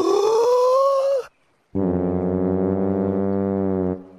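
A cartoon boy's wail rising in pitch for about a second. After a short gap comes a long, steady, very low sousaphone note held for about two seconds.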